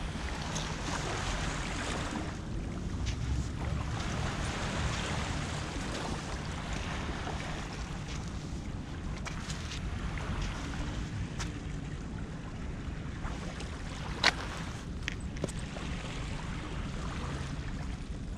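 Steady wind rushing and buffeting the microphone, with a few sharp clicks, the loudest about fourteen seconds in.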